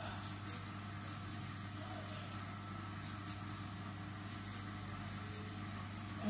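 Felt-tip marker strokes rubbing faintly on paper while colouring, repeating every half second or so, over a steady low hum.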